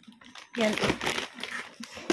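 Plastic bag of chicken nuggets crinkling as it is handled and turned, in rough rustling patches around a short spoken word.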